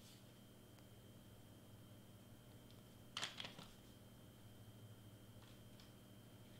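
Near silence with a faint steady hum, broken about three seconds in by a brief cluster of light clicks and taps from hands handling the cardstock-wrapped can and glue gun, with a few faint ticks near the end.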